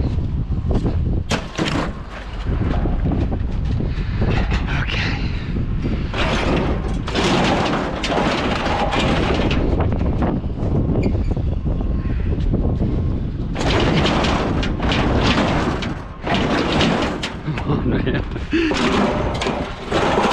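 Scrap metal being handled on a utility trailer: repeated clanks, bangs and thuds as pieces are shifted and dropped, busiest in two stretches in the middle, over a steady low rumble.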